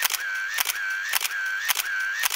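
A rapid, regular series of sharp clicks, about two a second, each followed by a short steady high tone.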